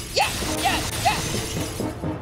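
Cartoon-style sound effects for a superhero's power attack: a quick rising zip and two short chirps, then a rapid run of small tinkly clicks, over background music.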